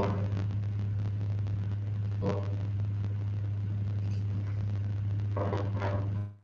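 Steady low electrical hum on a video-call microphone line, with faint muffled speech fragments about two seconds in and near the end. The hum is the sign of a faulty mic connection: the other side could not hear the speaker.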